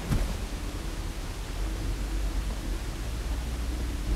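Steady background hiss with a low hum underneath, and no distinct event.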